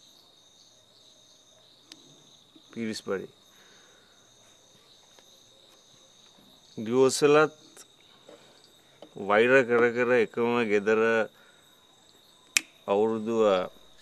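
Crickets chirping steadily, a thin high trill with a pulsing chirp over it. A voice speaks four short phrases over them, the loudest of them near the end.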